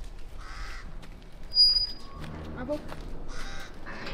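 A crow cawing twice, each call a harsh caw about half a second long, one near the start and one about three seconds later. A short, loud, high-pitched tone sounds between them.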